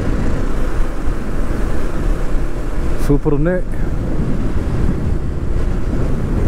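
Steady wind rushing over the microphone of a motorcycle riding at highway speed, with the road and engine noise buried under it.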